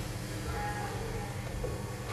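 A steady low hum under faint room noise, with a few faint, indistinct pitched sounds.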